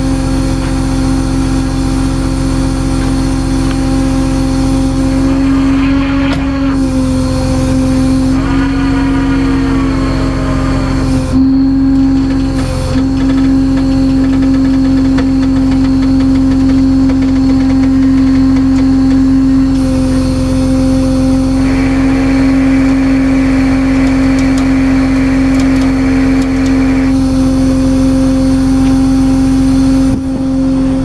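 Tow truck's engine running steadily with a loud, constant droning whine. About a third of the way in the pitch wavers briefly, and a hiss joins for several seconds in the second half.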